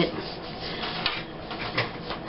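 Paper rustling as a cut-out photo is pressed and smoothed down onto a scrapbook page, with a few light taps.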